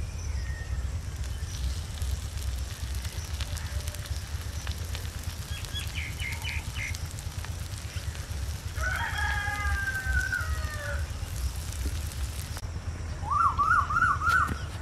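A rooster crowing once, a long call of about two seconds near the middle, with a few short clucks some seconds earlier and another brief chicken call near the end. A steady low rumble runs underneath.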